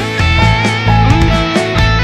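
Rock band music without vocals: an electric guitar plays a lead line with gliding, bent notes over bass and drums.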